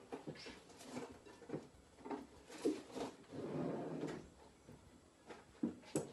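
Rummaging in a kitchen drawer to pull out a flexible baking mat: intermittent knocks and scrapes with rustling, a sharper knock a little before halfway.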